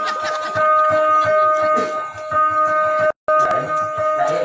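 Two-stringed boat lute holding a steady high drone note, with voices low underneath. The sound drops out briefly about three seconds in.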